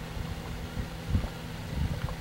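Steady low background hum with a few soft, dull low bumps, about a second in and again near the end.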